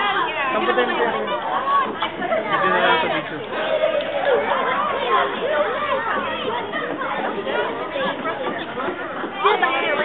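Several people talking at once: overlapping chatter with no single voice standing out.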